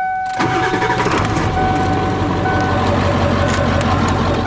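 Ford OBS pickup's 7.3 Power Stroke turbo-diesel V8 starting about half a second in and then settling into an idle, with a steady high tone running over it.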